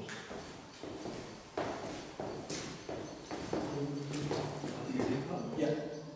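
Footsteps on a hard floor with indistinct voices, as people walk through and set off a tripwire.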